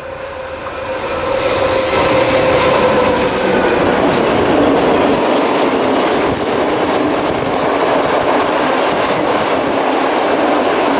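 A locomotive passes close, its engine tones dropping slightly in pitch over the first four seconds, followed by a long train of four-axle Uacs cement wagons rolling past with a steady rumble and wheel clatter over the rail joints.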